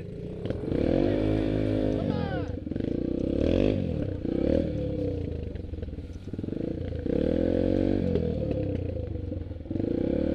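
Small dirt bike engine revving up and easing back several times, its pitch rising and falling with each burst.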